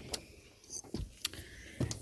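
A few soft knocks and light clicks spread over two seconds: footsteps and the handling noise of a phone being carried while walking.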